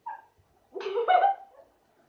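A brief high-pitched squeak, then a short whining vocal cry, just under a second long, that steps up in pitch.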